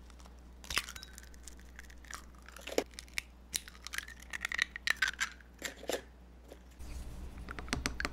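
Raw eggs being cracked and emptied into a ceramic bowl: scattered sharp knocks of shell on the rim, with the wet plop of the contents. Near the end the eggs are beaten, a utensil tapping the bowl in a quick, even run of clicks.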